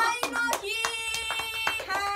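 Two people clapping their hands in quick, uneven claps, with a voice holding one long high note through the middle of the claps.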